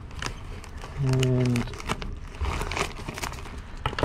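Clear plastic vacuum bag of dehydrated food crinkling as it is handled, with light clicks. About a second in, a man's voice gives a short, steady hummed "mm", the loudest sound.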